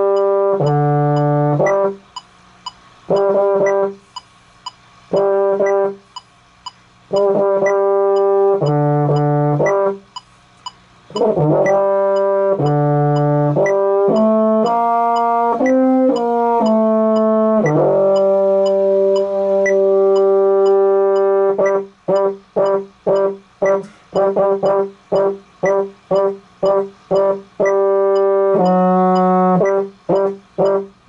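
Baritone horn playing a band part: groups of short repeated notes, a short moving melody about eleven seconds in, one long held note, then a run of short detached notes about two a second.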